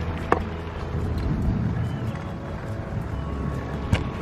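Recumbent trike rolling along a tarmac path: a steady low rumble of tyres and drivetrain, with a sharp click about a third of a second in and another near the end.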